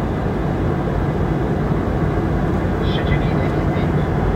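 Steady cabin noise of a Boeing 717 in flight: the rush of air past the fuselage mixed with the drone of its two rear-mounted turbofan engines.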